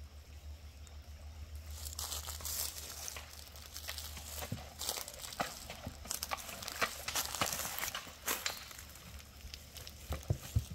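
Dry leaves and twigs crunching and crackling in an irregular run of steps through forest undergrowth, starting about two seconds in.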